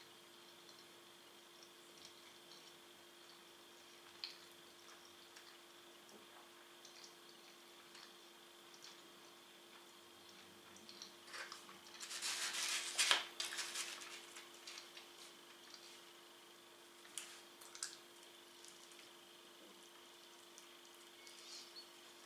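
Faint chewing and mouth sounds over a low steady room hum, with a louder rustling scrape about twelve seconds in as a pizza slice is pulled from its cardboard box.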